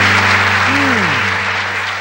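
Studio audience applauding over the band's held closing chord. A low note slides downward about a second in.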